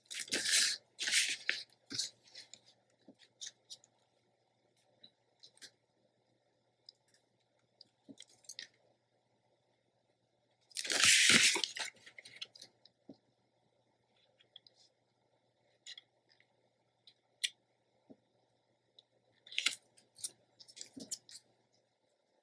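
Black cardstock being handled and shifted on a cutting mat: two brief rustles at the start, a louder rustle lasting about a second midway, and scattered light taps and clicks between.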